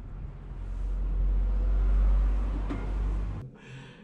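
A deep, low rumble that swells to its loudest about halfway through, fades, and cuts off shortly before the end.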